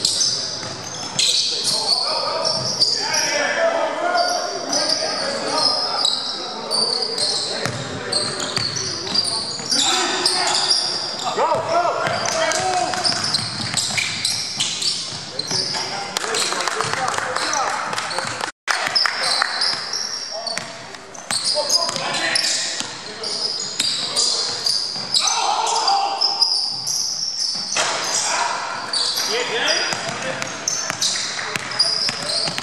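Basketball game play on a hardwood gym court: the ball bouncing, sneakers squeaking and players calling out, all echoing in a large hall. The sound drops out completely for an instant about two-thirds of the way through.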